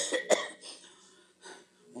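A person coughing: two short, sharp coughs right at the start, followed by a quiet pause.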